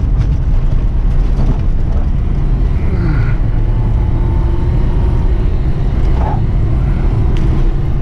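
Classic Lada Zhiguli's inline-four engine pulling hard, heard from inside the cabin over a heavy rumble of tyres and body on a rough, snowy track. About three seconds in the engine note drops, then holds steady.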